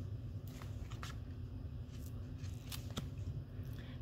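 Board-book cardboard pages being handled and turned, giving a few faint clicks and taps over a low steady room hum.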